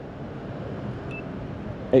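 Steady low outdoor background noise, with one brief, faint high beep about a second in.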